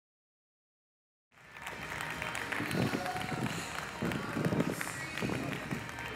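Silence, then a little over a second in an audience starts applauding over music.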